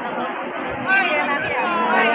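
Crowd chatter: several people talking over one another, with a nearer voice coming up louder about a second in.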